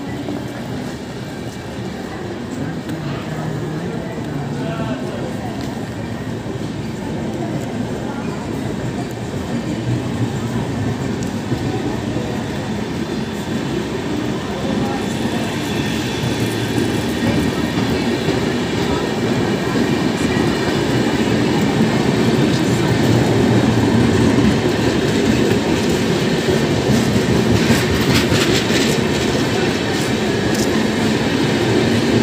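Passenger coaches of a departing express train rolling past along the platform, a continuous rumble of wheels on rails. It grows steadily louder as the train picks up speed.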